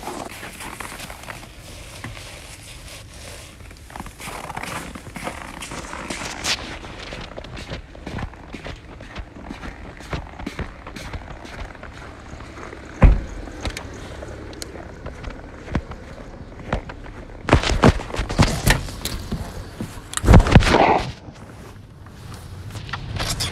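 Footsteps and the rustle and knocking of a handheld phone being carried, with a sharp thud about 13 seconds in and a run of louder knocks and thuds near the end.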